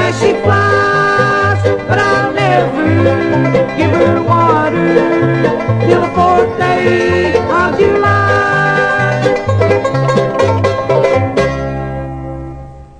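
Bluegrass band music: banjo and guitar over an alternating bass line, closing on a final chord held from about eleven and a half seconds in.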